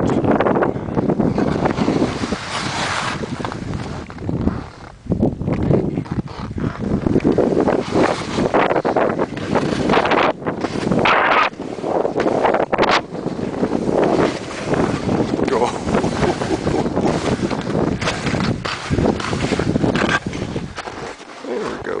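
Wind buffeting the camera microphone, a loud, uneven gusting rush that rises and dips every second or two.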